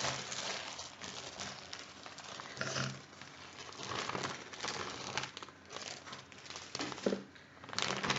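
Plastic bags crinkling and rustling as they are handled: an opened bag of carrots and a vacuum-sealer bag. The rustles come in irregular bursts, a little louder about three seconds in and near the end.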